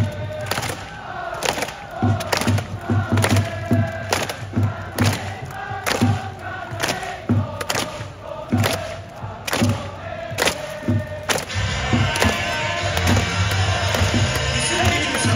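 Stadium music with a pounding drumbeat, about two hits a second, and many voices singing or chanting along. Near the end a denser rushing crowd noise rises under it.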